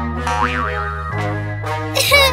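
Instrumental children's backing music with a held bass line, with a springy cartoon boing sound effect, a quick wobbling up-and-down glide, about half a second in.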